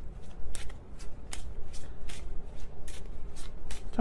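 A deck of tarot cards being shuffled by hand: an irregular run of sharp card snaps and clicks.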